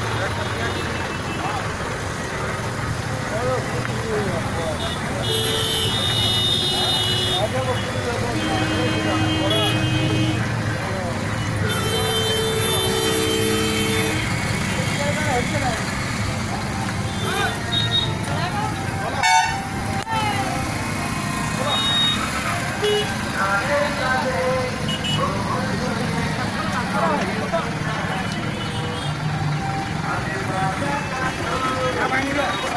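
Vehicle horns honking in a traffic jam over a crowd of voices and running engines. Several long horn blasts of different pitches come about five seconds in and again around ten and thirteen seconds, with a single sharp knock near the middle.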